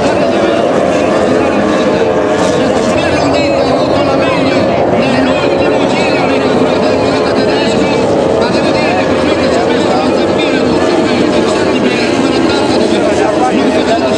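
Formula 2 racing powerboats' outboard engines running at high revs as the boats race past: a loud, steady whine whose pitch wavers.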